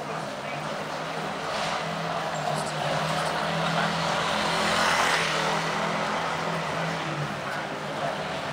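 Street traffic noise: a motor vehicle passes, its sound swelling to a peak about five seconds in and then easing, over a steady low hum, with passers-by talking.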